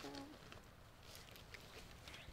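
Near silence: a brief murmured vocal sound right at the start, then faint scattered ticks over low background noise.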